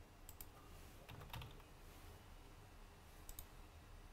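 Faint clicks of a computer keyboard and mouse over near-silent room tone: a couple of clicks at the start, a short cluster about a second in, and a pair near the end.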